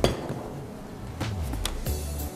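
Soft background music with a sharp click at the start and a few light clinks and knocks of kitchenware being handled on a steel counter.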